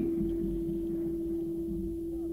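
A steady single-pitch hum with a low rumble beneath it: the background noise of an old analogue tape recording and its sound system.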